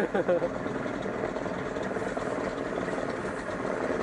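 A floatplane's propeller engine running steadily as the plane moves across the water, heard as a continuous drone.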